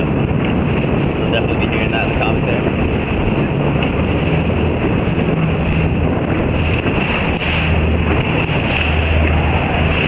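Wind buffeting the microphone over rushing, splashing water. A low hum runs underneath, coming and going and stronger in the second half.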